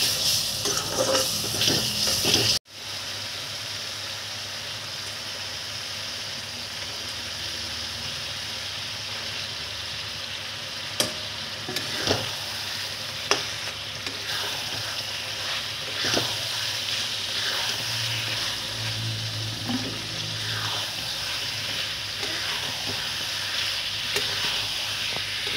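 Onion-and-spice masala frying in hot oil in a karahi, with a steady sizzle as a metal spatula stirs it. A few sharp clacks come a little before the middle, and the sound cuts out for an instant early on.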